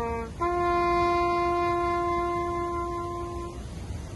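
Solo brass horn playing a slow ceremonial call: a lower note ends just after the start, then a higher note is held steadily for about three seconds and stops.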